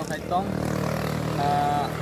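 A motor vehicle's engine running with a steady low drone, under a voice.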